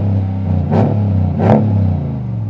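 RAM 1500 Limited pickup's engine running through its aftermarket sport exhaust, revved in about three short throttle blips over a steady idle.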